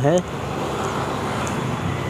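Steady road traffic noise, an even hiss with no distinct events.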